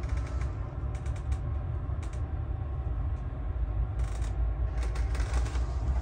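Inside a moving passenger train carriage: a steady low rumble from the running train, with light creaks and clicks from the carriage at several moments.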